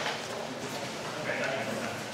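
Faint voices and hall echo in a quiet lull between sword strikes, with no blade contact heard.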